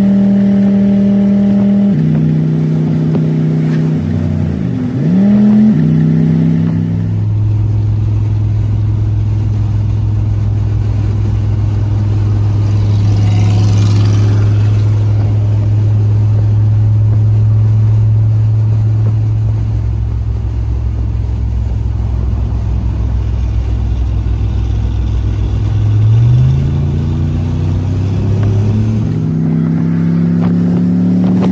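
Engine of a turbocharged squarebody pickup heard from inside the cab: in the first few seconds it pulls through the gears, its pitch dropping at each upshift, then it settles into a steady low drone at cruising speed. Near the end it climbs in pitch again and drops at another shift.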